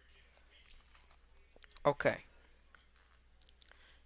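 A few faint, scattered keystrokes on a computer keyboard, with a small quick cluster near the end.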